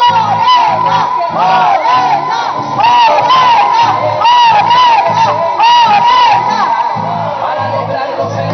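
A large crowd shouting and cheering over loud music with a regular low beat.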